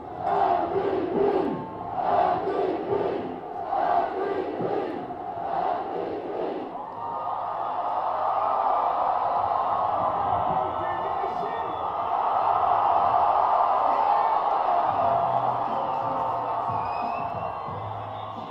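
A large crowd of football fans chanting in rhythm, a shout roughly every two seconds, then breaking into sustained cheering from about seven seconds in that is loudest a few seconds later.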